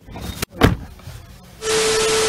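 A loud thump just over half a second in, then from about a second and a half in a TV-static transition effect: loud hiss with a steady hum tone under it.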